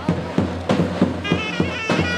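Davul bass drum and zurna playing Turkish folk music: drum strokes about three a second under a nasal, wavering reed melody.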